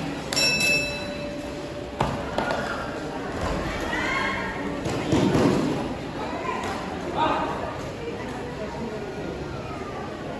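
Shorinji Kempo paired demonstration: short sharp shouts and thuds of feet and bodies landing on foam floor mats, echoing in a large hall. A sharp knock comes about two seconds in and a heavy thud halfway through.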